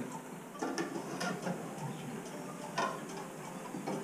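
Faint mechanical clicking and ratcheting from a wind-up gramophone's spring mechanism being handled, just before the record plays.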